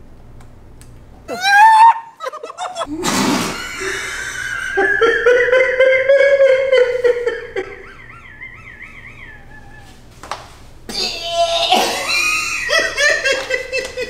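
A woman and a man laughing, in a long wavering stretch through the middle and again near the end.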